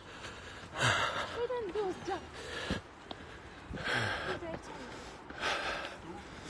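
A person breathing hard and loud into the phone microphone after jogging in freezing air, one gasping breath every second or two.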